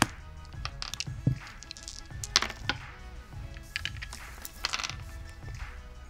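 Ten-sided dice being rolled by hand and clattering on a tabletop: a scatter of sharp clicks and knocks, some in quick clusters, over quiet background music with sustained tones.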